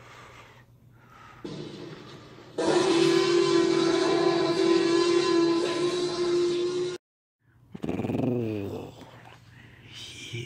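Dinosaur roar sound effect for a T-Rex, loud and steady for about four seconds, then cut off abruptly. About a second later a shorter sound follows, falling in pitch.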